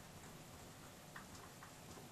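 Near silence, with faint ticks and scratches of a dry-erase marker writing on a whiteboard, two small ticks standing out a little past a second in.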